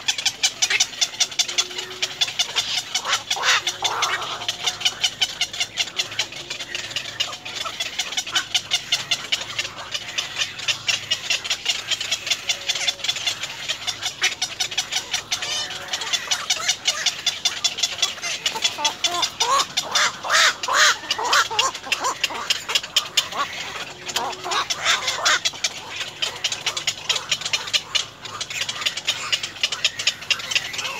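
Herons calling at the nest: a rapid, steady ticking chatter, with louder harsh squawks about three seconds in, around twenty seconds and again near twenty-five seconds.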